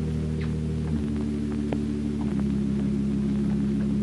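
Low, sustained organ chords of a dramatic music cue, shifting to a new chord about a second in and again a little past two seconds.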